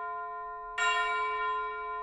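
A bell struck once, about a second in, ringing on with a slow fade; the previous strike is still ringing as it begins.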